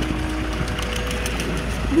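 A vehicle engine idling with a steady low hum, with a few faint crackles over it.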